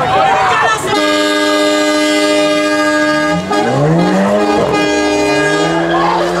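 A car horn held steady for about two and a half seconds amid a burnout. Then a car engine revs up and down in rising and falling sweeps, with crowd voices over it.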